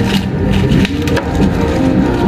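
Ice cubes clattering and crunching as they are tipped from a metal ice scoop into a plastic cup of milk tea, heard as a run of sharp clicks.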